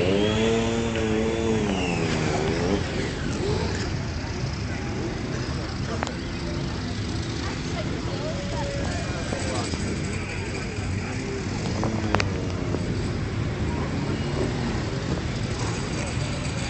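Motorcycle engines and crowd chatter in a busy street. In the first couple of seconds one motorcycle engine comes through close, its pitch rising and then falling away. After that, engine noise and voices carry on underneath, with a couple of sharp clicks.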